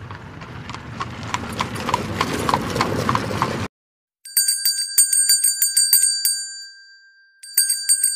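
Sound-effect playback from a LEGO light kit's sound module: a horse-drawn carriage with hooves clip-clopping, growing louder for about three and a half seconds and then cutting off suddenly. After a short gap, a small bell rings with rapid repeated strikes for about three seconds and fades away, then starts ringing again near the end.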